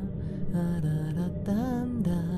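A man humming a slow, wordless tune, holding notes and sliding up and then down in pitch near the end, over soft background music.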